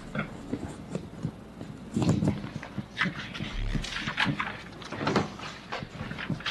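Irregular rustling and rubbing handling noises close to a handheld microphone as papers and presentation boards are shuffled, coming in short bursts about a second apart.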